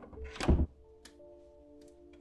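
A round doorknob turned and the door's latch giving way with a dull thunk about half a second in, then a faint click as the door swings open. A steady background music drone runs underneath.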